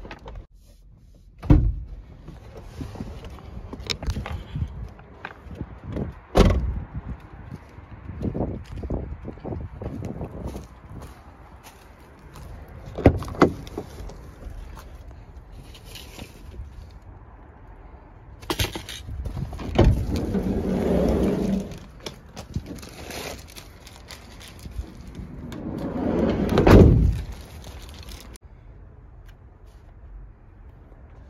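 Thumps, knocks and clunks inside a delivery van: doors shutting and parcels and gear being moved about on the seat. Several sharp bangs are spread through, and the loudest one near the end follows a short rising rumble.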